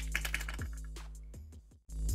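Background hip-hop beat with deep held bass notes and sharp ticking percussion. It fades down and cuts out for a moment near the end, then comes back louder.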